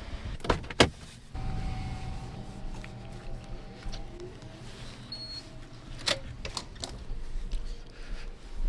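A car door unlatching and shutting with two sharp clicks, then a steady low hum with scattered light knocks and a louder knock about six seconds in.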